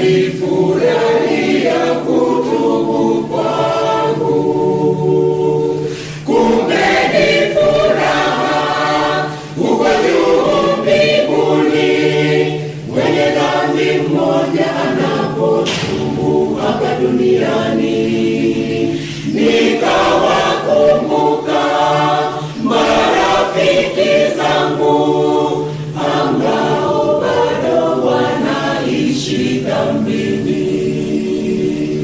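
Mixed church choir of men's and women's voices singing a Swahili hymn in parts, phrase after phrase with short breaks for breath between them.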